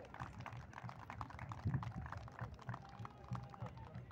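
Faint, scattered hand clapping from a few people, irregular claps without a steady rhythm.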